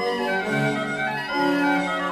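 Orchestral strings playing a brisk classical-era passage, the notes changing several times a second, in the Allegro first movement of an organ concerto in G major.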